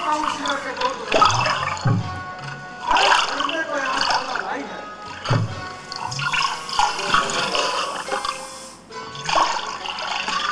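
Stage play soundtrack of music and a voice, mixed with a gurgling, pouring water sound effect: a pot being filled at the river.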